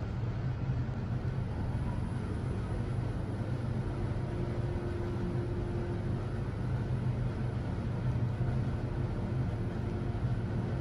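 Mitsubishi GPS machine-room passenger lift travelling down between floors, heard from inside the car: a steady low hum of the ride, with a faint higher tone for about two seconds midway.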